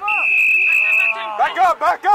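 A referee's whistle blown once, a steady high note held for about a second, followed by spectators' voices shouting.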